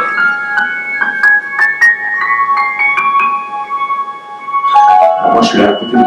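Piano-like keyboard notes triggered by a plant's electrical signals through a 'music of the plants' device, played from a recording. A quick run of single notes steps upward in pitch toward the top of the keyboard, where the plant was seeking a moved note. Near the end, lower notes come in along with voices.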